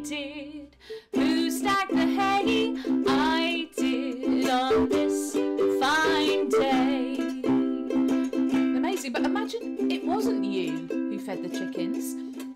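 A woman singing a folky children's song to a strummed ukulele accompaniment. Near the end the singing gives way to her speaking over the ukulele.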